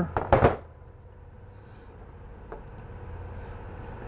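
Metal wire cutters set down on a workbench with a brief clatter about half a second in, then a steady low background hum with a couple of faint clicks.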